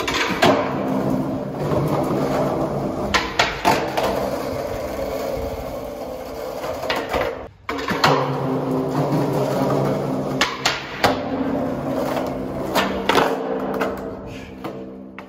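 Skateboard wheels rolling over a rough concrete tunnel floor, a steady rumble, with sharp clacks of the board every few seconds. The sound drops out for a moment about halfway through, then the rolling picks up again.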